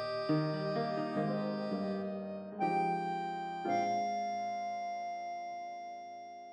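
Background music: slow, sustained chords that change about a third of a second in, again a little before the middle, and once more soon after, then fade gradually.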